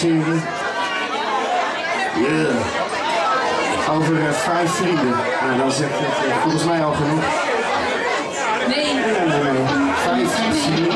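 Voices talking over the chatter of a crowd in a busy room, with no music playing.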